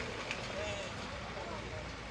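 Steady background noise with faint, distant voices talking.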